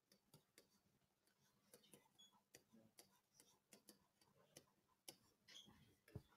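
Near silence: room tone with faint, irregular small clicks and ticks.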